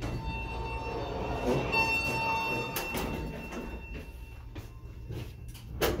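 Elevator's stainless-steel sliding doors opening, with a steady tone sounding for the first three seconds and a swell of noise near two seconds in. Several clicks follow, the loudest just before the end as a car button is pressed.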